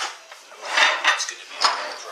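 Steel C-clamps handled on a wooden tabletop: metal clinking and scraping, with a rattling clatter about a second in and a sharper clank near the end.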